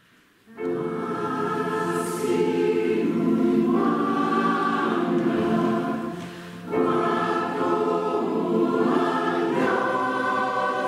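Mixed four-part (SATB) choir singing in a church, coming in about half a second in. The sound dips briefly between phrases past the halfway point, then the full choir resumes.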